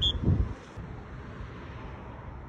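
Roadside background: wind buffeting the phone's microphone over steady traffic hiss, with a low rumble in the first half second.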